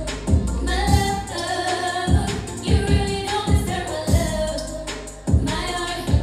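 A woman singing R&B live into a handheld microphone over a backing track with a heavy beat, her voice holding and sliding between notes.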